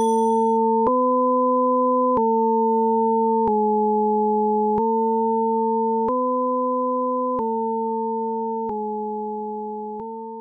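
Outro of a hip-hop track: a sustained, pure electronic synth tone stepping between a few nearby notes about every 1.3 seconds, with a faint click at each change of note, slowly fading out as the song ends.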